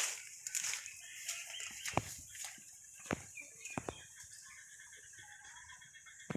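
Faint bird calls, with a few sharp knocks or clicks scattered through.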